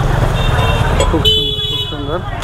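A vehicle horn sounds once, held for under a second near the end, over steady street traffic noise.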